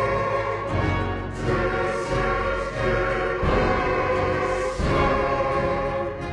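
Choral music, voices holding long sustained notes.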